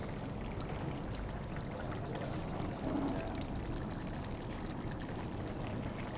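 A pan of fish and mango curry simmering on a gas stove, giving a steady bubbling hiss.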